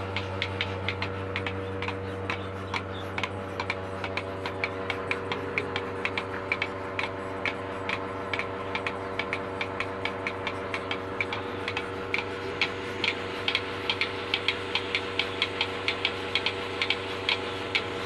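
Electric bucket milking machine running: a steady hum from the vacuum pump with the rapid, regular clicking of its pulsators as it milks a cow.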